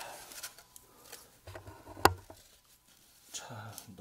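Close handling noises: brief rustles and knocks, with one sharp click about two seconds in that is the loudest sound.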